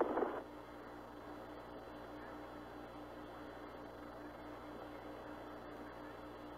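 Open spacecraft air-to-ground radio channel between transmissions: a steady, faint static hiss with a low steady hum, after the previous transmission cuts off in the first half second.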